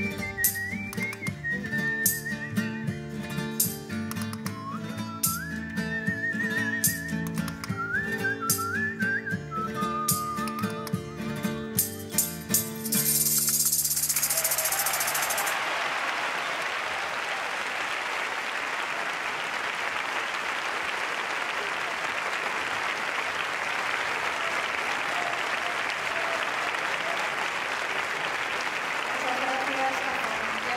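A man whistles a folk tune with a wavering vibrato, in the Gredos whistling style, over strummed guitars and a bass guitar with a rhythmic clicking beat. The music ends about 13 seconds in, and steady audience applause fills the rest.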